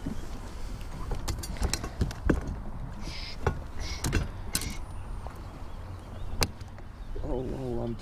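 Scattered light clicks and taps as a black crappie and a plastic measuring board are handled on a boat's carpeted deck, over a low steady rumble; a man starts speaking near the end.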